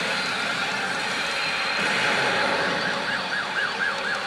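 Steady din of a pachinko hall, with electronic sound effects from a CR Shin Hokuto Musou pachinko machine. In the second half a warbling, siren-like tone repeats about four times a second.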